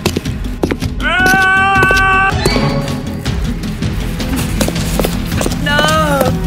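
Film soundtrack music with a high, held cry about a second in, lasting over a second. Near the end comes a man's wail that falls in pitch.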